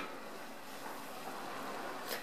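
Faint, steady hiss of water heating to a boil in an aluminium electric skillet.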